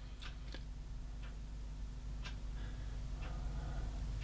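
Quiet room tone with a low steady hum and a few faint, scattered small clicks and ticks, about half a dozen, spread irregularly.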